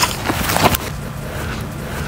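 Wind buffeting the microphone as a steady rushing noise, with a sharp knock at the start and a few short thuds about half a second in from the disc golfer's run-up and throw.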